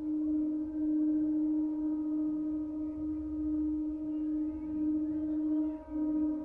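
Sound-healing instrument holding one steady low singing tone, wavering in a slow pulse, with fainter overtones ringing above it.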